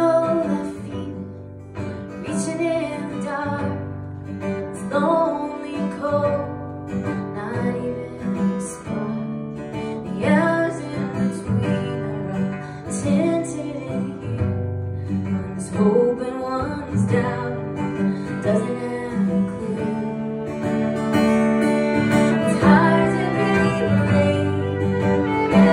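Live acoustic song: a woman singing over a strummed acoustic guitar, with a fiddle bowing along.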